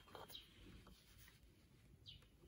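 Near silence: faint rubbing and handling noise from a plastic PLC enclosure being turned over in the hands, with one faint, short high chirp about a third of a second in.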